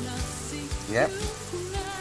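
A steady crackling hiss under background music that carries a low, sustained bass, with a short spoken 'yep' about a second in.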